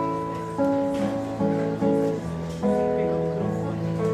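Live acoustic music: guitar playing, with voices. The notes are held and change every half second or so, with a sharper fresh attack every second or so.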